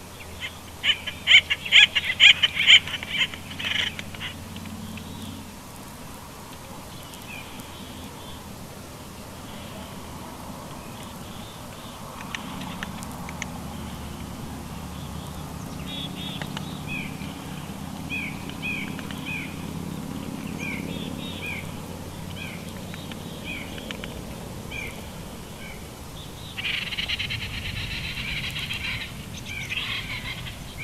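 Wild birds calling in pine trees: a loud burst of harsh, rapidly repeated calls in the first few seconds, then a long series of short, high chirps spaced a second or so apart, and another loud harsh stretch of calling near the end.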